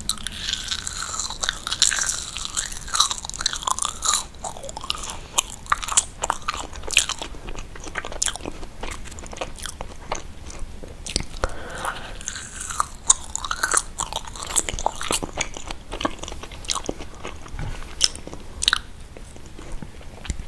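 Close-miked mouth sounds of biting and chewing sticky, foamy marshmallows: a dense run of small wet clicks and smacks.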